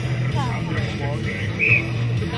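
Background rock music with a steady bass line and a voice over it, and a short high note near the end.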